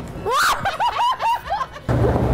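A person laughing: a rising cry that breaks into a quick run of about six short laughs.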